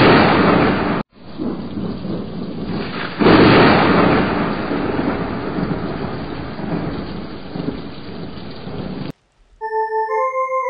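Thunder sound effect: a loud thunderclap that cuts out briefly about a second in, then a second loud crash about three seconds in that rumbles on and slowly fades before stopping abruptly near the end.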